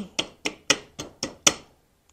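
A small hammer tapping the hammer pin into an AR-15 lower receiver: a steady run of light, sharp metallic taps, about four a second, stopping about a second and a half in.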